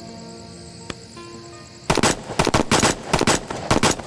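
Rapid volley of pistol gunfire, about a dozen shots in roughly two seconds, beginning about halfway in after a held music chord fades.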